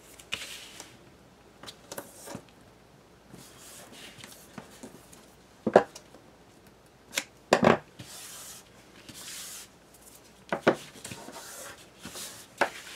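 Double-sided tape being run off its roll along the edge of a cardstock piece, with a few sharp clicks and snips of scissors cutting the tape and scratchy stretches of tape and paper being handled.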